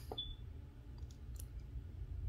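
A few faint clicks of a copper penny being handled on a digital scale's metal platform, with a brief high tone about a quarter second in.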